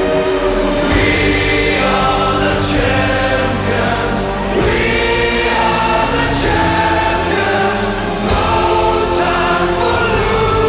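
Music with a choir singing long held chords that change about every second.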